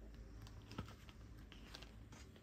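Faint paper handling and a few light clicks as the pages of a photobook album are leafed through.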